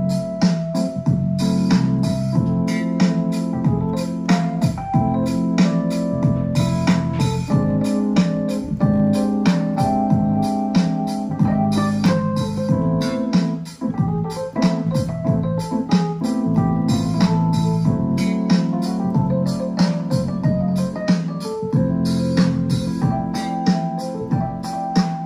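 Roland FP-80 digital piano played with both hands: a continuous chordal passage of many held notes, with a brief drop in loudness about fourteen seconds in.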